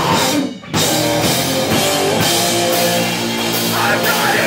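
Hardcore punk band playing live: distorted guitar, bass and drums. The band cuts out for a moment about half a second in, crashes back in, and holds sustained chords over the drums in the second half.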